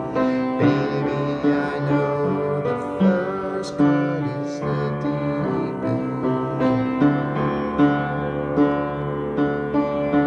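Piano-style keyboard accompaniment playing sustained chords at a slow, even pulse, an instrumental passage of a pop ballad with no singing.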